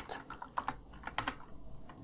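Typing on a computer keyboard: a handful of separate keystroke clicks at an uneven pace.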